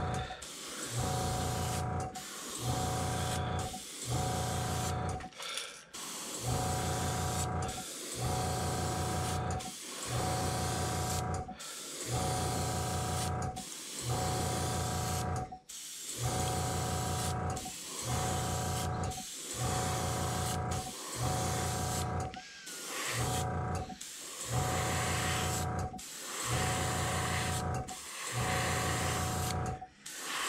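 An airbrush spraying paint at about 10 psi in short repeated passes. Each pass is a burst of air hiss over a motor hum, roughly every one and a half to two seconds, stopping cleanly between passes.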